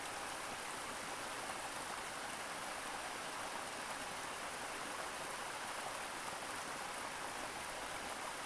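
Shallow rocky creek trickling over a small cascade between boulders: a steady, even rush of water.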